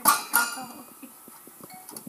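Toy piano keys struck by a baby's hands: two sharp notes in the first half-second, the second ringing briefly, then faint taps on the keys.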